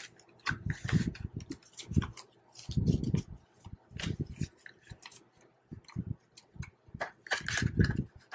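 Paper banknotes rustling and flicking in irregular bursts as hands count and sort them, with louder handling near the end as the bills are slipped into a cash envelope.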